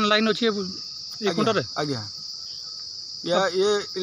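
A steady, high-pitched insect chorus runs without a break beneath a man's speech.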